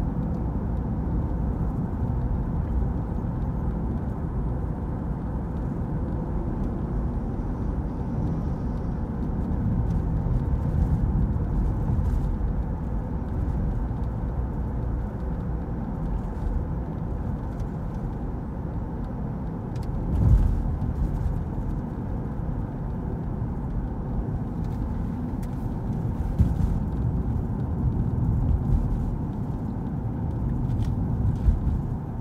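Steady road and engine noise heard inside a moving car's cabin while driving at street speed. A brief low thump about two-thirds of the way through.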